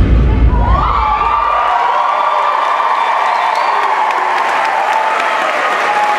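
Audience cheering and applauding at the end of a dance number, with high shouts rising about a second in. The heavy bass of the hip-hop music dies away over the first two seconds.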